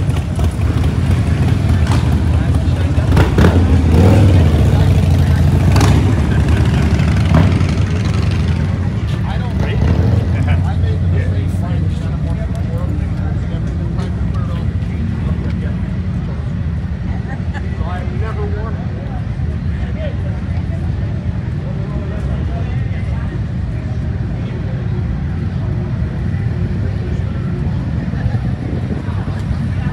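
Motorcycle engines running along a busy street, louder in the first eight seconds or so, with voices of people nearby.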